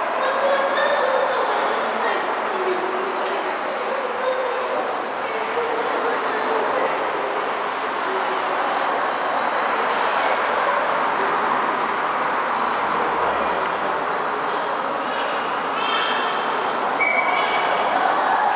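Steady hiss and rumble of road traffic passing on a dual carriageway below, with no single vehicle standing out.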